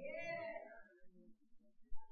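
A faint, drawn-out vocal call that rises and then falls in pitch, fading out about a second in.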